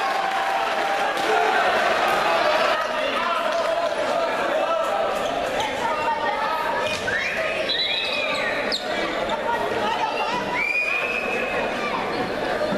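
Futsal match in a large sports hall: players and spectators shouting and talking over one another, echoing, with ball thumps and sneaker squeaks on the court floor, a few short squeaks in the second half.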